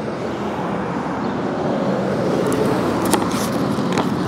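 Steady outdoor road-traffic noise, swelling slightly in the middle as a car goes by, with a few light clicks near the end as a picture book's pages are handled.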